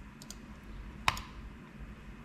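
Clicks on a laptop: a few faint clicks, then one sharp click about a second in, as a sensor is picked from a drop-down list and the dialog box is closed.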